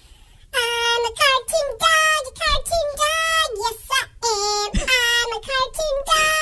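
A high-pitched, child-like voice singing, played back through an iPad's speaker as the soundtrack of a My Talking Pet animation of a dog drawing. It starts about half a second in, with held notes that slide up and down.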